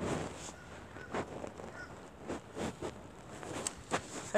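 Faint handling noise from a handheld phone: scattered soft rubs and a few light knocks.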